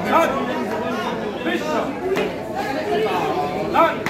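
Indistinct chatter of several voices talking at once, with no clear words.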